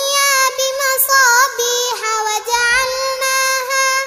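A young girl's voice chanting a Quran recitation (tilawat) in a melodic style, holding long notes with wavering, ornamented turns and brief breaks for breath.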